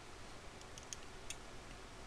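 Low steady hiss with about four faint, light ticks in the middle.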